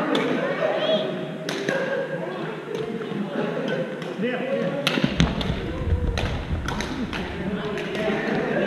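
Badminton rackets striking shuttlecocks, several sharp cracks scattered through the moment, over the chatter of many voices echoing in a large gym hall. A low rumble comes in about five seconds in and lasts a couple of seconds.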